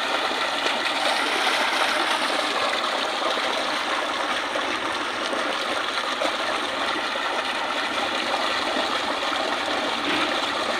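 Water gushing steadily from a submersible pump's outlet pipe into a concrete tank, splashing over hands held in the stream.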